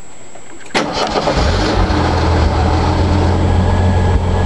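1985 Jeep CJ7 engine on a Weber carburetor restarting: it catches suddenly about a second in and settles into a rough idle. The roughness is the rough idle the owner is still trying to cure, along with a badly set choke.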